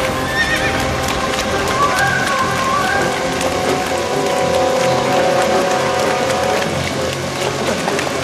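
A horse whinnies and its hooves clop on a dirt road beside a wooden-wheeled carriage. Background music plays under it, holding a long note in the second half.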